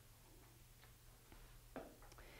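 Near silence: room tone with a low steady hum and a few faint ticks, one slightly stronger near the end.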